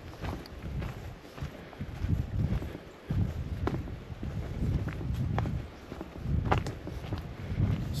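Footsteps on a dirt footpath, with low gusty rumbling from wind on the microphone and a few sharp clicks along the way.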